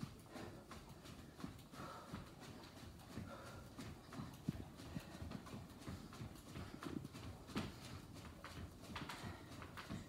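Sneakered feet jogging in place on a hardwood floor: a run of quiet, uneven footfall thuds.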